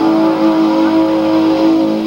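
Distorted electric guitar holding long sustained notes, played live at high volume through the stage PA.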